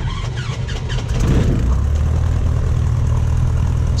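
A Cessna 150's air-cooled flat-four engine and propeller heard from inside the cabin, getting louder about a second in as the throttle is opened, then running steadily.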